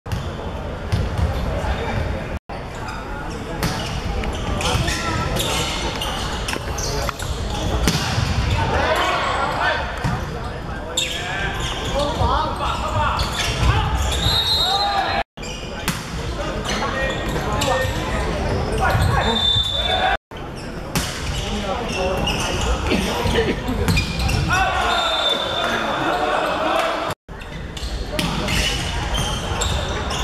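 Indoor volleyball play in a reverberant sports hall: the ball struck and hitting the court floor, with players and spectators shouting and cheering. The sound cuts out briefly four times at edits between rallies.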